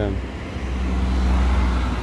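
A car approaching on the road, its low engine rumble and tyre noise growing louder through the second half.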